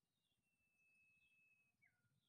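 Near silence, with a faint thin whistled call held steady for about a second and a half, then a short falling whistle near the end.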